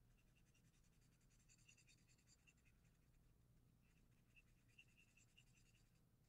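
Very faint scratching of a felt-tip marker colouring in on paper, in quick back-and-forth strokes, with a pause in the middle.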